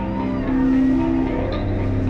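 Electric guitars and bass left ringing through the amps between songs: sustained droning notes that change pitch a few times.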